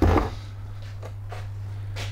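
A short thump as things are set down on a wooden workbench, then a few faint handling clicks over a steady low electrical hum.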